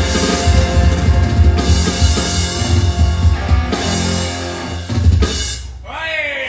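Live band playing with electric guitar and drums, with a strong bass-drum beat; the music stops near the end.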